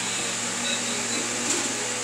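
Steady fan-like background noise with a low hum, and a light click about one and a half seconds in.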